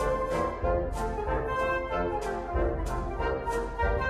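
Background music with held melodic tones over a steady beat.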